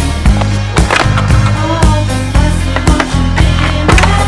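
Stunt scooter wheels rolling and clacking on concrete, with several sharp knocks, under background music with a steady bass line.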